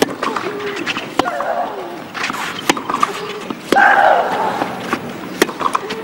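Tennis rally on clay: racquets strike the ball sharply about every one to one and a half seconds. A player lets out a long shriek on a stroke about four seconds in.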